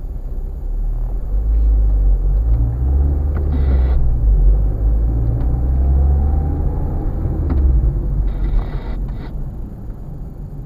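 Car engine and road rumble heard inside the cabin as the car drives along. The rumble builds about a second in, stays strong through the middle and eases off near the end as the car slows.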